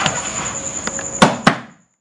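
Grapplers shifting on foam mats during a triangle choke, with two sharp slaps on the mat about a quarter second apart near the end, over a faint steady high whine; the sound then fades out.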